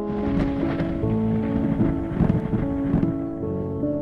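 Soft piano music with a thunder sound effect laid over it: a rush of noise that comes in at once, peaks a little after two seconds and dies away after about three seconds, while the piano carries on.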